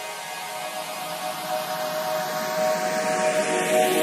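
Progressive psytrance breakdown: held synth pad tones without a beat, under a hissing noise sweep that grows steadily louder as the track builds.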